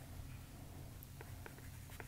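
Faint taps and light scratching of a stylus writing on a tablet's glass screen, a few small ticks in the second half, over a low steady hum.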